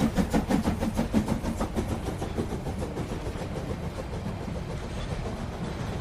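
Sound effect of a steam train pulling out: a steady low rumble with a fast, even rhythm of chuffs, getting slightly quieter as it goes.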